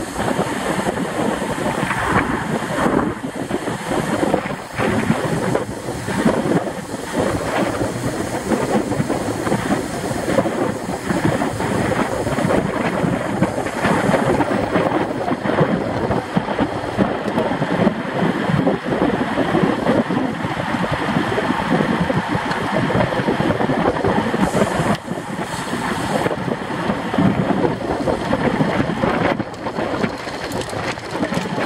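Steady wind rush buffeting the microphone of a camera on a road bike riding at about 21 to 27 mph, mixed with the rumble of tyres on the road.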